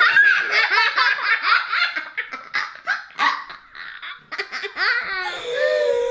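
Two young girls laughing hard together in rapid bursts, easing off briefly about four seconds in and then picking up again.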